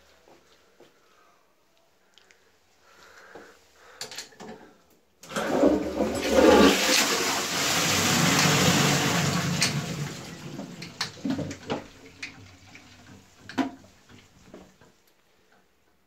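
A Dudley Tri-shell high-level cistern flushing into an Armitage Shanks Magnia pan. A couple of clanks come about four seconds in, then water rushes loudly into the bowl for about five seconds and tails off into trickling and dripping.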